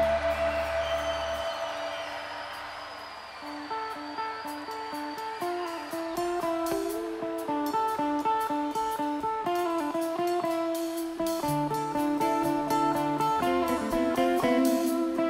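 Live electric rock band: a held chord fades away, then an electric guitar picks a quick run of single notes that builds in loudness, with bass guitar coming back in near the end.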